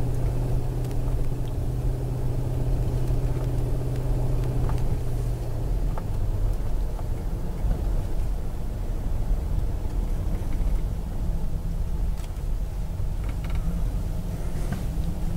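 Car interior noise while driving slowly: a steady low engine hum and road rumble. The engine's steady tone eases about five seconds in as the car slows.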